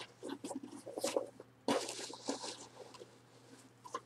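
A cardboard shipping box and its packing material rustling and scraping as a hand searches inside it, in irregular scratchy bursts.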